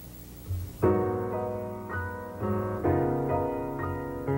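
Grand piano playing the slow opening chords of a jazz ballad introduction. The chords start about a second in, after a faint steady hum, and follow one another about every half second.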